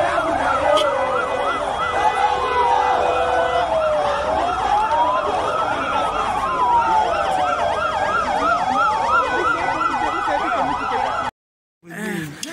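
Two or more vehicle sirens sounding together: a slow wail rising and falling over a few seconds and a fast yelp several times a second, over crowd noise. The sirens cut off abruptly near the end.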